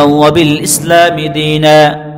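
A man's voice chanting Arabic in long, held, melodic notes: a religious text intoned in a recitation style rather than spoken.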